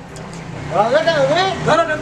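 A voice singing a wavering, ornamented melody that begins about a third of the way in, over a low steady hum.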